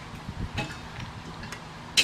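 Quiet low rumble with a few light ticks, ending in one sharp click as a car-wash spray wand is hung back on its wall holder.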